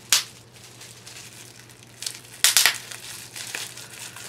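Bubble wrap around a small packaged item crinkling in a few short bursts as it is handled.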